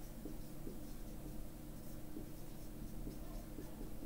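Marker pen writing on a whiteboard: faint, irregular strokes over a low steady hum.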